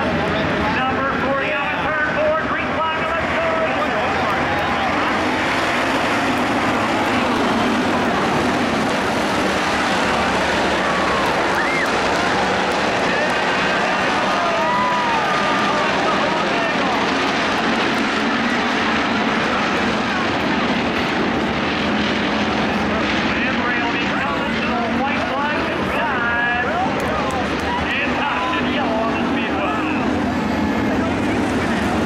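A pack of IMCA Hobby Stock cars running on a dirt oval, their V8 engines rising and falling in pitch as they pass through the turns, with crowd voices close by.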